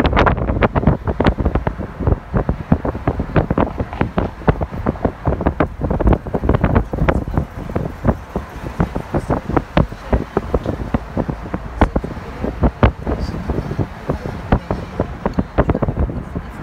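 Wind buffeting the microphone in dense, irregular gusts over the road noise of a car driving along city streets.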